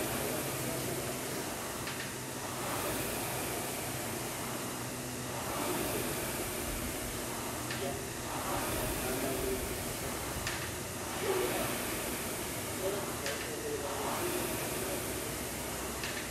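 An air rowing machine's fan flywheel whooshes with each hard stroke, in a repeating swell about every three seconds over a steady hiss.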